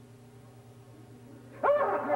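A person's sudden loud yelp, sliding up and down in pitch, breaks in near the end over a low steady hum.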